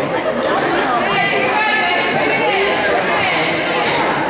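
Chatter of many overlapping voices echoing in a gymnasium, with a few longer drawn-out calls about a second in.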